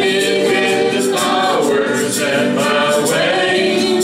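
Live acoustic music: several voices singing together over strummed acoustic guitar, with a steady tambourine rattle.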